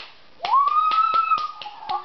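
A run of about eight sharp finger snaps. Over them is a high whine that rises and then holds steady for about a second.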